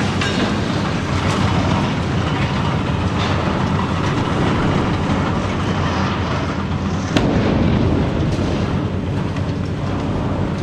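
Hitachi ZX870 high-reach demolition excavator working under load, its engine running steadily while concrete crunches and debris falls from the silo walls. One sharp bang of breaking or falling concrete about seven seconds in.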